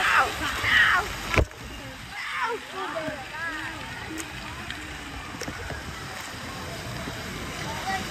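Water splashing and spraying in a pool, a steady hiss under voices calling out. A sharp knock about a second and a half in, after which the sound drops and the water hiss carries on.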